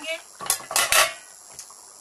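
Stainless steel pot lid clanking as it is set down. There are a few sharp metallic clanks with brief ringing between about half a second and one second in.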